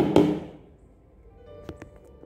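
A plastic ladle stirring crushed grapes in a plastic tub, knocking quickly against the tub a few times before stopping within the first half second. Then soft background music with held notes.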